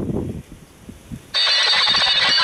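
Shortwave audio from a JGC WE 055 PLL world receiver tuned near 7.04 MHz: the signal of shifting electronic tones drops out, leaving a faint low rumble, and comes back suddenly after about a second, as the set is stepped to a new frequency.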